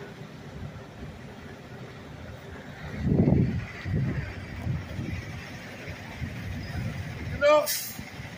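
Steady outdoor background noise with a low rumble about three seconds in, then weaker irregular low rumbles, and a brief voice sound near the end.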